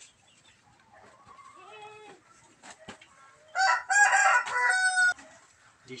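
A rooster crows once, loud, starting about three and a half seconds in and lasting about a second and a half. Fainter chicken calls and a few soft knocks come before it.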